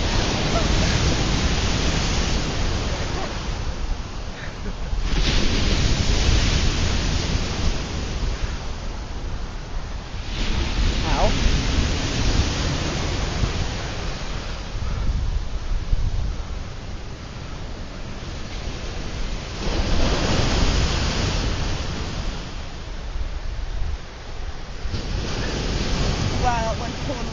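Ocean surf breaking on a sandy beach: about five waves crash in turn, each a loud rush of foam that swells and then fades over several seconds.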